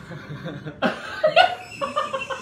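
A man chuckling in short bursts of laughter, starting a little before halfway through.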